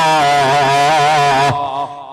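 A man's voice chanting a long, drawn-out melodic line in a sermon-style intonation. It stops about one and a half seconds in.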